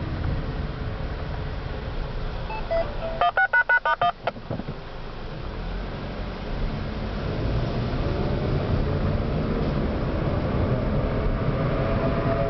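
A rapid string of about seven DTMF touch-tone beeps, lasting about a second, a little over three seconds in: the tone code that sets off the outdoor warning sirens for the test. Steady car road noise runs underneath.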